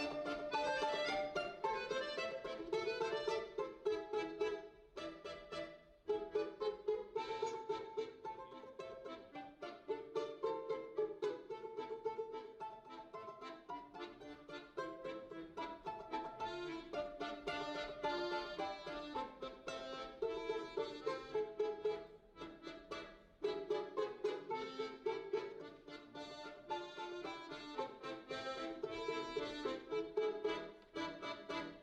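Balalaika and piano accordion playing a lively duet: quick plucked balalaika notes over accordion melody and chords. The music drops out briefly about six seconds in and again a little past twenty seconds.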